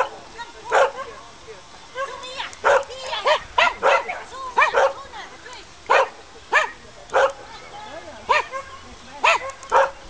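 Small dog barking over and over in short, sharp barks, about fifteen in quick, irregular succession, as it runs an agility jumping course.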